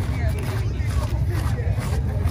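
People talking, with a shout at the start, over a steady low rumble.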